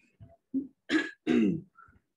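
A woman clearing her throat and coughing: a run of short bursts, the loudest about a second in, followed by a second one half a second later.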